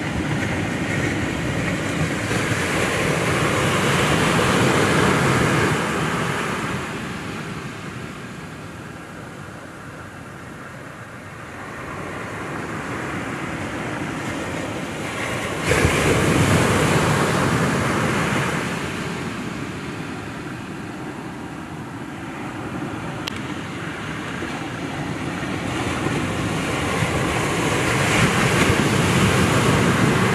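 Ocean surf breaking on a beach, a steady wash that swells and fades in slow surges about every twelve seconds, with wind rumbling on the microphone.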